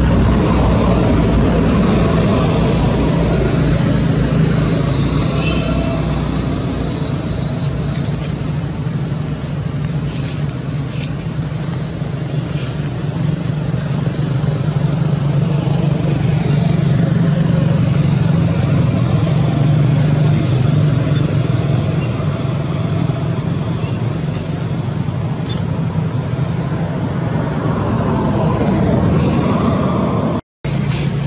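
A steady low mechanical hum with a constant rush of noise over it, like an engine running; it stays at much the same level and pitch throughout.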